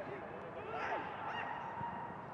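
Footballers shouting on the pitch: several short yelled calls that rise and fall in pitch, overlapping around the middle, with no crowd noise behind them.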